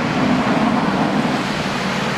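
Steady rushing road noise of traffic on a snow-covered mountain highway.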